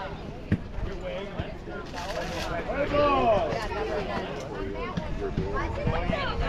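Chatter and calls from spectators and players, with one voice calling out louder and longer about three seconds in. A short sharp knock sounds about half a second in.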